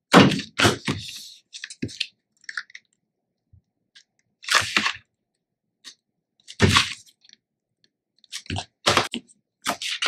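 Adhesive tape being pulled off its roll in several short crackling rips, loudest just after the start and about two-thirds of the way in, with the paper being handled and pressed down between the pulls.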